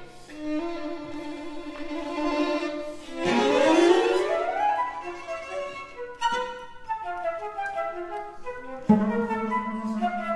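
Flute, clarinet, violin and cello playing contemporary chamber music: held notes, then several instruments sliding upward together about three seconds in, followed by short detached notes and a new held low note near the end.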